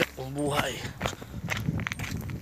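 A man's voice briefly, then irregular footsteps and scuffing close to the phone as he walks.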